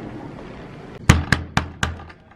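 Four quick, sharp knocks on a door, evenly spaced at about four a second.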